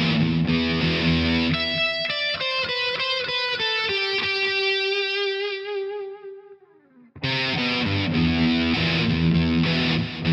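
Distorted electric guitar playing a low power-chord riff, then single high notes. A held note with wide vibrato starts about four seconds in and rings out, fading almost to silence. The low riff starts again abruptly about seven seconds in.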